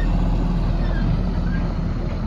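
Heavy diesel truck engine running steadily with a low, even hum.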